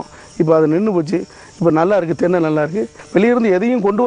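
A man's voice in several drawn-out phrases, each under a second long, with short pauses between them.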